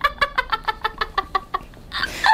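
A woman laughing hard in a quick, even run of short 'ha' sounds, about eight a second, that fades and stops a little past halfway.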